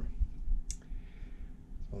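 Handling noise from a handheld camera: low thumps and rumble, with one sharp click about two-thirds of a second in.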